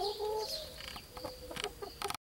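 Young backyard hens (Rhode Island Red × White Rock crosses and Speckled Sussex pullets) clucking softly while they forage: a drawn-out, wavering call in the first second, then fainter short clucks and a few light clicks.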